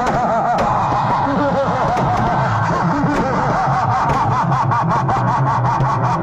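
Firecrackers packed into a burning Ravan effigy going off in a dense, continuous crackle of pops, with wavering tones running through the din.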